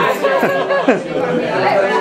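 Several people talking at once in Italian, their voices overlapping in lively chatter.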